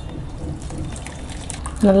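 Curdled milk and whey poured from a steel pan into a cotton straining cloth: a steady splashing pour of liquid draining through.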